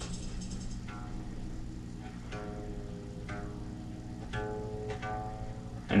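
Single guitar string on a seven-string electric guitar plucked about four times, roughly a second apart, each note ringing and fading. The string is being checked and tuned back up to pitch after its bridge saddle was moved to correct flat intonation.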